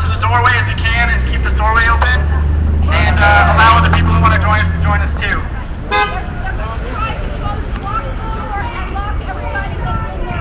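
Crowd of protesters, many voices talking and shouting over each other. A low, steady engine drone runs under them for the first five seconds and then stops.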